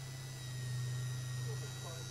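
Small flywheel electric motor of a Dapol class 73 OO-gauge model locomotive running free of its gear train, a steady hum with a faint high whine, lightly loaded by a fingertip brushing one flywheel. The sound swells a little about half a second in.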